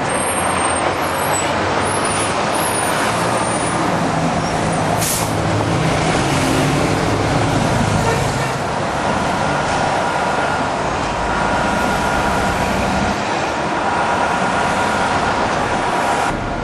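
Busy city street traffic: engines of passing cars and a heavy vehicle running, with a brief hiss about five seconds in.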